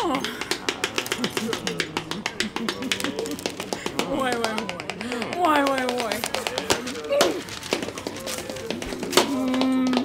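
Quick, dense clicking percussion all through, with wordless vocal sounds sliding up and down in pitch over it in short phrases.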